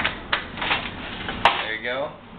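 A few clicks and knocks as a plastic milk jug is capped and handled, with one sharp knock about one and a half seconds in. A man's voice is heard briefly near the end.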